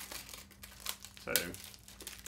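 Crinkling plastic packaging as a Blu-ray case is handled, with two sharp crackles near the middle, over a faint steady low hum.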